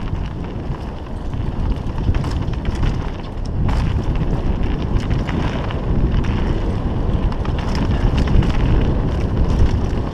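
Wind buffeting a helmet-mounted camera's microphone as a mountain bike descends dirt singletrack, with steady tyre rumble and scattered sharp clicks and rattles from the bike over bumps. It grows louder about four seconds in as speed picks up.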